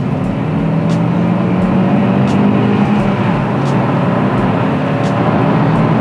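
Kia XCeed's 1.5-litre turbocharged four-cylinder petrol engine pulling hard under full acceleration, heard from inside the cabin over tyre and road hiss. Its note climbs in pitch, falls back once around the middle and climbs again.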